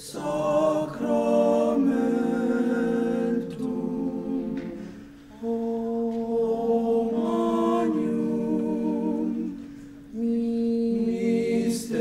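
Small men's a cappella choir singing slow, sustained chords in long phrases, with short breaks between phrases about five and ten seconds in.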